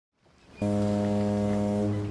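Ship's horn giving one long, steady, low blast that starts about half a second in and cuts off near the end.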